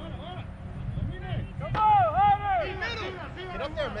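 Voices shouting and calling out across an outdoor soccer field, beginning a little under two seconds in, over a low steady rumble.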